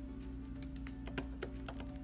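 Scissors snipping through folded shimmery fabric: a quick run of sharp clicks through the middle, the loudest two a little after a second in, over steady background music.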